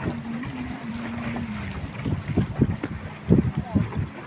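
A boat's motor hums steadily, its pitch dropping slightly about a second and a half in as the boat eases off. Wind buffets the microphone with irregular low thumps.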